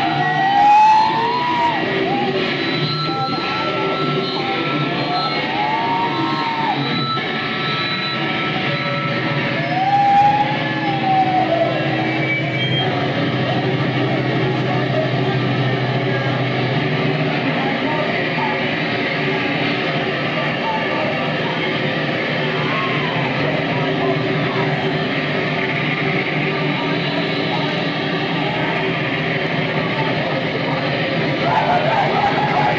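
Live noise band playing a loud, unbroken wall of distorted electric guitar noise and drones, with a few short rising-and-falling wails over it in the first ten seconds or so.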